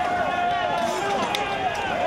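Many men's voices shouting over one another during a street clash, with a long steady high note held under the shouting and a single sharp crack partway through.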